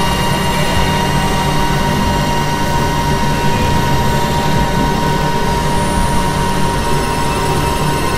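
Dense, steady electronic synthesizer drone: a noisy low rumble with several held tones layered on top, one high tone standing out clearly throughout.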